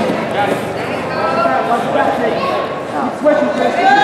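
Voices of several people talking and calling out at once, with no other distinct sound standing out.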